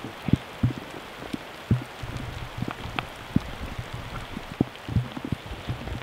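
Rain pattering, with irregular close taps and a few soft low thumps scattered through it.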